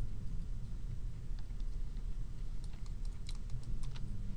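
Scattered clicks of a computer keyboard and mouse, more of them in the second half, over a steady low hum.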